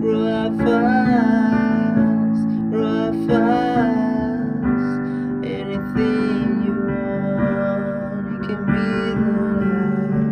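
Digital piano playing slow sustained chords, with a male voice singing over it in the first few seconds. After that the piano carries on alone.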